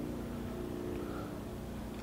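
A faint, steady low hum with a few held tones that fades slightly toward the end.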